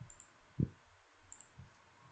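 A few faint computer mouse clicks, the loudest a dull click about half a second in, followed by two softer ticks.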